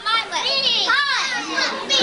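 Several children's voices talking and calling out over each other, high-pitched and indistinct, with one high rising-and-falling call about a second in.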